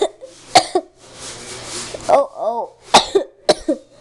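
A person coughing harshly several times, in two clusters, with a short pitched groan between them.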